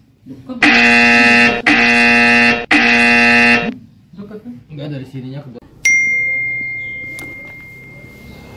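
A phone alert sounding three long buzzing tones, each about a second, at one steady pitch: the driver app announcing a new GoMart order. About six seconds in a single bright ding rings out and fades slowly.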